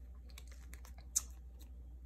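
Photocards and a binder's plastic sleeve page being handled, giving a run of faint clicks and rustles, with one sharper click about a second in.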